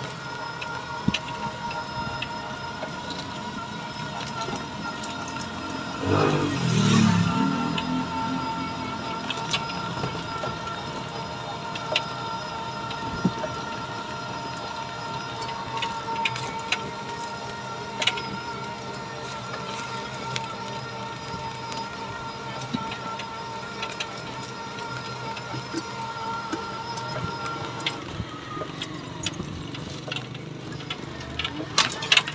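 Electric motor whine of an NWOW e-bike while driving, several steady tones held at an even pitch, then falling as it slows near the end. A louder low sound lasts about two seconds, starting about six seconds in, and small clicks and rattles are heard throughout.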